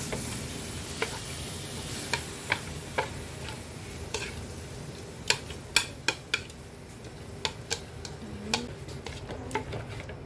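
Long wooden chopsticks clicking and scraping against a metal wok as duck tongues are stir-fried, irregular sharp taps over a light, steady sizzle.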